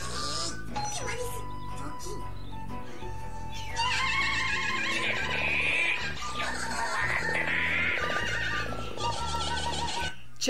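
Cartoon soundtrack playing: background music under characters' voices, getting louder and busier about four seconds in.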